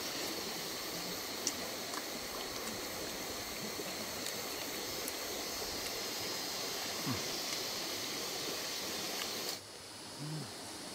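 Steady rushing of a nearby stream, with a few faint clicks over it. The rushing cuts off suddenly just before the end.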